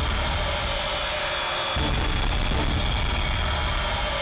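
Dramatic background score: steady held tones over a low rumbling drone, the low end shifting about two seconds in.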